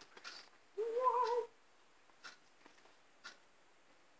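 A cat meowing once, a short call lasting under a second, about a second in.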